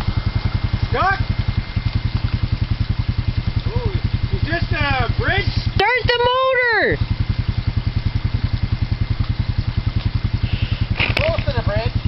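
ATV engine idling with a steady, even low pulse, while voices call out a few times over it, the loudest about six seconds in.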